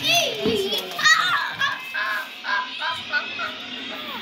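Children's voices chattering and calling out in high-pitched bursts, with no clear words.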